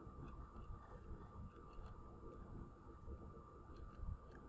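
Near silence: faint room tone with a thin, steady high tone.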